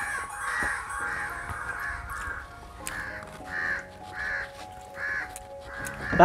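A crow cawing repeatedly, short harsh calls about one to two a second with brief pauses between runs.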